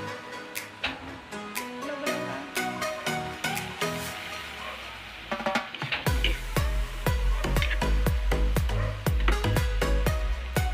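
Background music with a drum beat; about six seconds in, a deep bass and a heavier, louder beat come in.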